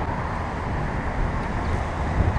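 Steady wind and road rumble on a bicycle-mounted camera riding in city traffic, with car traffic noise beneath it; no single event stands out.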